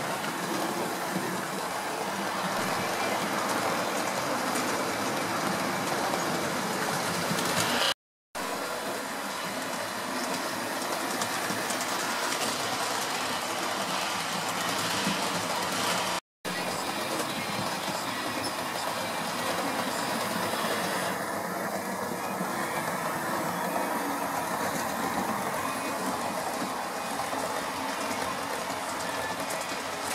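Hornby OO gauge model trains running on track: a steady whir of the locomotive motor and rumble of wheels on rail, cutting out briefly twice.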